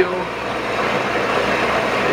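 Metal-cutting bandsaw running steadily, a constant mechanical hum with an even noise over it.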